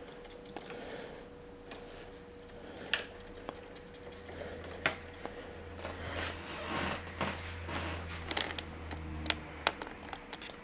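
Small, scattered clicks and taps from a plastic mecha action figure's joints and parts as it is handled and posed on a hard tabletop. A low hum joins from about halfway through.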